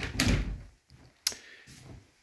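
A door being handled and closed: a thump just after the start, then a single sharp click a little over a second in.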